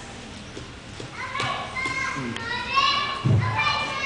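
A young child talking in a high-pitched voice, starting about a second in and going on for about two seconds, followed by a short low thump.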